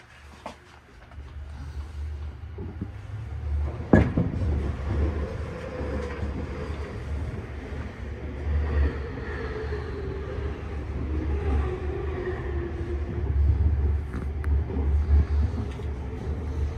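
Tobu 50000-series electric train pulling away and gathering speed, heard from the driver's cab: a low rumble of wheels on rail that grows over the first few seconds, a sharp knock about four seconds in, and a humming tone that shifts in pitch as it runs on.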